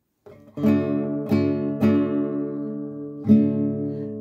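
Classical guitar strumming the introduction of a corrido: three chords struck about half a second apart, then a pause and a fourth chord near the end left ringing.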